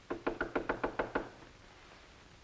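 Knuckles knocking on a wooden door: a quick run of about nine knocks lasting about a second.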